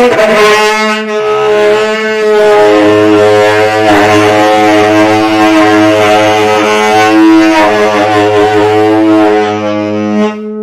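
Saxophone playing slow, long-held notes, sliding down into the first note, over a steady low sustained accompaniment.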